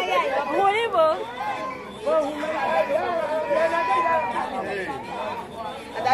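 People talking and chattering, voices overlapping; no other sound stands out over the speech.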